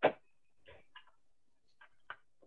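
A sharp click right at the start, then a few faint short ticks over a quiet room.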